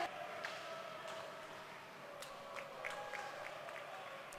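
Faint arena ambience of a roller hockey match in play: a low, even crowd murmur with a few faint sharp clicks scattered through it.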